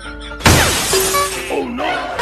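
Glass-shattering crash: one sudden loud smash about half a second in that fades away over about a second, right after the backing music cuts out.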